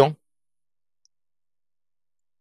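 Near silence after a word trails off, with one faint computer mouse click about a second in.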